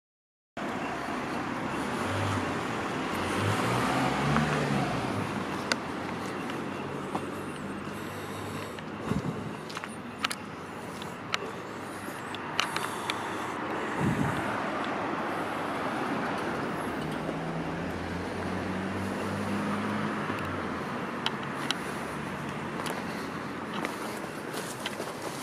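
Road traffic passing, a steady rush with engine hum swelling twice, with a few sharp clicks in between.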